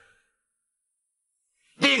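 Near silence between two phrases of a man's speech: his voice trails off just after the start and he speaks again near the end.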